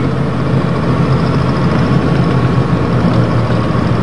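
Vehicle engine running with a steady low hum, heard on board as the vehicle drives along a gravel road.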